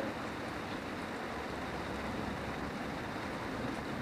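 Steady hiss of light rain falling, an even wash of noise with no breaks.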